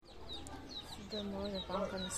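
Chickens in a yard: a run of short, high, falling peeps repeating several times a second.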